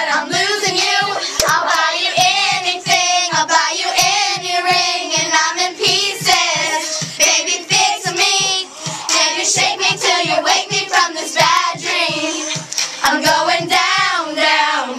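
A group of young girls singing loudly together over a pop song with a steady beat.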